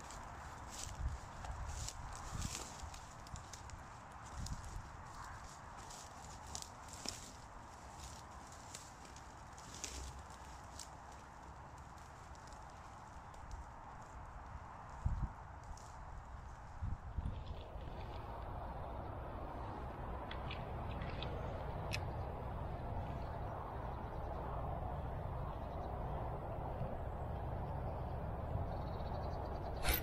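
Wind buffeting the microphone, with dry reeds and grass rustling and crackling close by in scattered clicks. Just over halfway through, a steadier hiss sets in.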